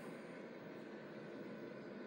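Quiet room tone: a faint, steady background hiss with no distinct sound events.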